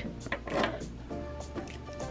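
Quiet background music, with a few light clinks from steel presser feet and bobbins being handled on a wooden table.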